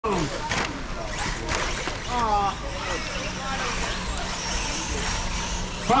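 4wd RC short-course trucks racing on a dirt track, their motors whining, with voices talking over them in the first couple of seconds.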